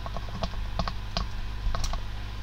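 Typing on a computer keyboard: a run of short, irregular key clicks over a steady low hum.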